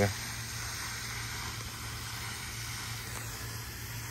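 Steady outdoor background noise: an even hiss with a low hum under it and no distinct events.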